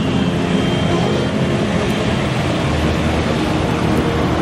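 Road traffic passing: a steady mix of car and motorcycle engines and tyre noise.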